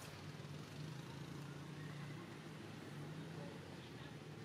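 Faint, low, steady hum of a distant motor vehicle engine, swelling and easing slightly.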